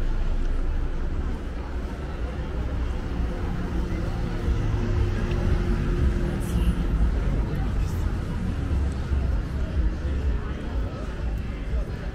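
Busy street ambience: passers-by talking, with a car engine running close by in the middle of the stretch.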